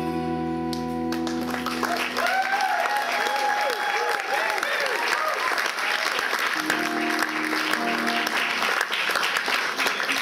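An acoustic guitar's last chord rings for about a second, then an audience applauds and cheers with whoops. From about seven seconds in, a few single guitar notes are picked under the continuing applause.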